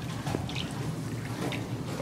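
Light water splashing and dripping from a swimmer sculling on her back in a pool, with a few small splashes standing out over a steady low hum.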